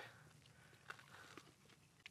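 Near silence: room tone, with a few faint ticks about a second in.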